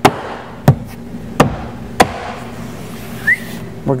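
Hand striking a plastic car door trim panel four times, about two-thirds of a second apart, pushing its retaining clips home into the door.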